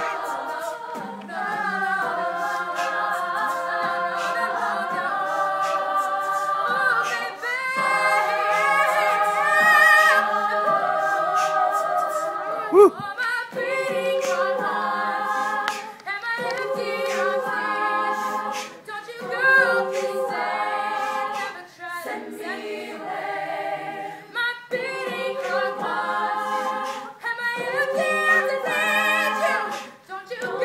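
Women's a cappella group singing a pop-soul song in close harmony behind a lead vocalist, with a vocal-percussion beat of regular beatboxed clicks. A single shouted "woo" sweeps up and down about 13 seconds in.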